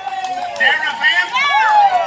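Several high voices calling out together in long, drawn-out exclamations that slide up and down in pitch, overlapping one another.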